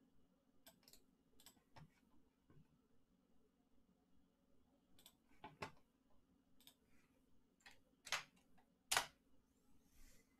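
Computer mouse and keyboard clicks, sparse and irregular, with two louder clicks near the end, over a faint steady hum.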